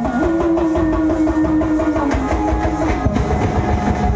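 Loud street-procession music: fast drumming and the metallic clash of lezim jingles, with one long held note over the beat for the first three seconds or so.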